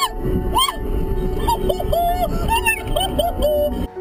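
A woman passenger shrieking and laughing inside a Tesla Roadster's cabin as it accelerates hard, in short high exclamations over a heavy low rumble of road and wind noise. The sound cuts off abruptly just before the end.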